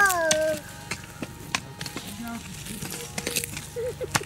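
A small child's brief high voice at the start, then a garden rake scraping through grass and soil in irregular scratchy strokes and crackles as weeds are cleared.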